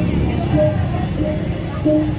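Balinese gamelan music accompanying a Rejang dance: short notes at two pitches recurring in an even pattern over a loud low rumble.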